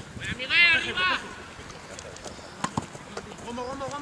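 A loud shout from a football player about half a second in, followed by a few short, sharp knocks and quieter calling near the end.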